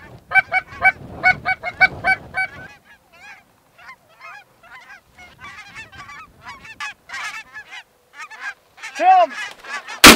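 Lesser Canada geese calling: a fast, even run of loud clucking honks, then a fainter, ragged chorus of many overlapping honks and cackles from the flock, with one louder drawn-out falling honk near the end.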